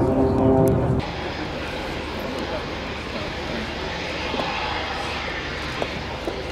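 Boeing 727 jet engines: a loud, steady droning tone that breaks off suddenly about a second in, followed by a steady, quieter jet roar with hiss as the airliner approaches. A few sharp clicks come near the end.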